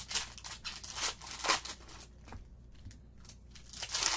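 Glossy trading cards slid and flicked through by hand in short rustling swishes, the loudest about a second and a half in.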